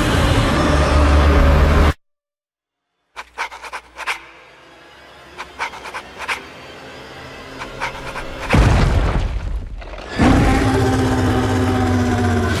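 Film-trailer soundtrack: full score with a monster's roar for about two seconds, cut off into a second of dead silence. Then come sparse sharp hits over a low, slowly building swell, with a loud hit about eight and a half seconds in, and the full score returns near the end.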